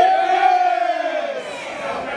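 One voice letting out a long, drawn-out yell in a wrestling crowd. It is held for about a second and a half and falls away near the end, over general crowd noise.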